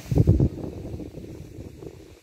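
Handling noise from a phone being moved while filming: low rumbling thumps against the microphone, loudest in the first half-second, then a softer rumble that fades away.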